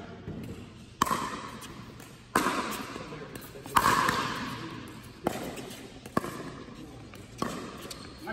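Pickleball rally: about six sharp knocks of paddles striking the hard plastic ball and the ball bouncing on the court, roughly one to one and a half seconds apart. Each knock rings on with echo in the large indoor hall.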